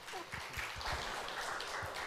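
Brief applause from a small congregation, dying away just before the end.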